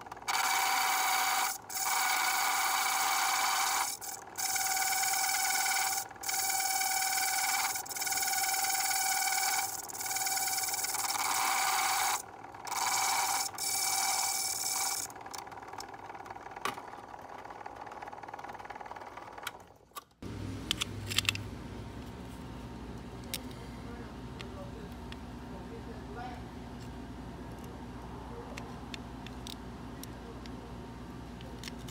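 A bench key-cutting machine's cutter wheel cutting a notch down the middle of a bit-key blank in about eight passes of a second or two each, ringing with a steady tone during each pass. The cutting stops about 15 s in. After a sudden change at about 20 s only a low hum and a few light clicks remain.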